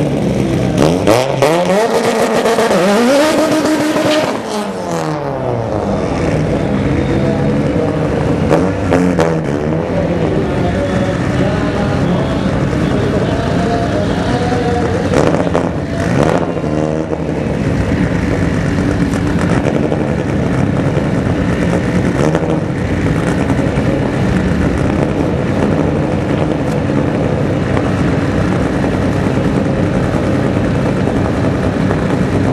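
Drag-race car engines at the start line. A turbocharged four-cylinder Mitsubishi Lancer Evolution revs up and down several times in the first five seconds, with more rev sweeps around ten and sixteen seconds in. For the rest there is a steady, loud idle.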